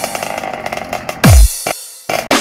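Hands-up dance remix: a rough, buzzing, chainsaw-like sound with a fast pulse, ending in a deep falling bass hit a little over a second in, followed by a short break.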